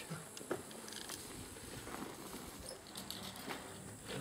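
Faint, scattered light clicks and taps of metal tools and parts being handled while a car alternator is taken apart.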